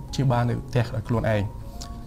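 A man speaking in Khmer, with music playing quietly underneath.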